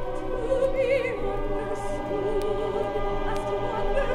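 Live choral and orchestral concert music played from a vintage vinyl LP: singing with a wide vibrato over sustained choir and orchestra chords. A steady low hum and a few faint record-surface clicks run under the music.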